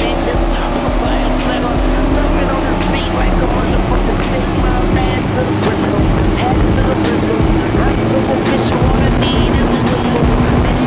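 Twin Evinrude 250 V6 two-stroke outboards running steadily at high speed, a constant engine drone over the rush of water and wind. Music with vocals plays along with it.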